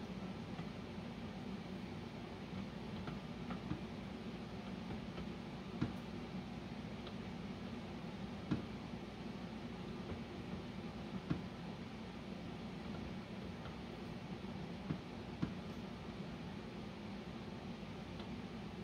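A few sharp metal clicks, spaced a few seconds apart, as an adjustable wrench is worked on a nut, snugging it down on the seal of a HydroVac vacuum brake booster, over a steady low hum of room noise.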